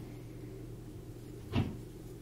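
One soft knock about one and a half seconds in, over a faint steady hum.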